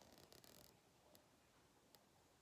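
Near silence: room tone, with a faint brief rustle about half a second in and a couple of soft ticks.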